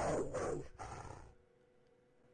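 A snarling beast sound effect: a rough, noisy animal snarl that fades out over the first second and a half, leaving near silence.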